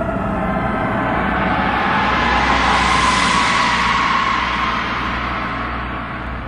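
Science-fiction spaceship flyby sound effect: a rumbling whoosh that swells to a peak about halfway through and then fades, over a low steady hum.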